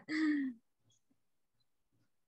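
A person's voice in the first half-second: a short, held sound at one steady pitch. It cuts off, and the rest is dead silence.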